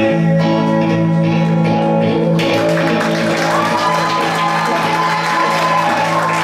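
Electric guitar chord ringing out as a song ends. About halfway in, audience clapping and cheering join over it.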